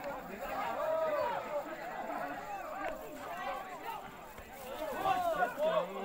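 Several people's voices talking over one another, a little louder near the end.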